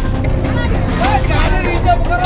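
Several people speaking loudly, starting about half a second in, over background music with a heavy low end.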